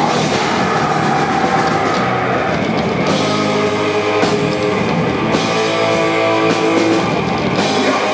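Old-school heavy metal band playing live and loud: distorted electric guitars over a pounding drum kit.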